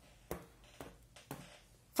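Faint, scattered clicks of plastic knitting needles and yarn being handled as stitches are worked, four small ticks over quiet room tone.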